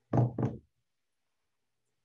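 Two dull knocks in quick succession, about a quarter second apart, early on a quiet background.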